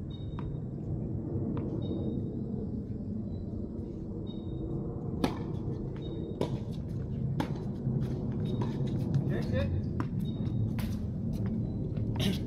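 Tennis ball struck by rackets and bouncing on a hard court during a rally: sharp pops roughly a second apart from about five seconds in, over a steady low background hum.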